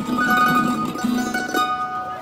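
Takamine acoustic guitar and F-style mandolin playing together, mandolin single notes ringing over strummed guitar chords. The playing dies down near the end as the tune winds to a close.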